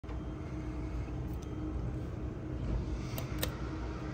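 Steady low rumble with a faint steady hum. A little after three seconds in come two sharp clicks about a quarter second apart as the elevator's up call button is pressed.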